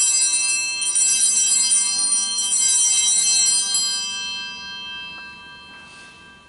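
Altar bells (sanctus bells) rung at the elevation of the consecrated host. They are shaken in a fluttering peal for about four seconds, then left to ring out and fade.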